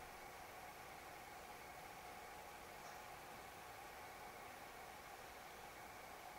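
Near silence: room tone, a faint steady hiss with a thin steady hum.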